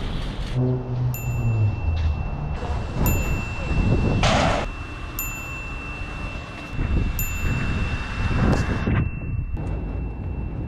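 A short bright chime sound effect rings four times, about two seconds apart, over a continuous background bed. A brief burst of noise stands out about four seconds in.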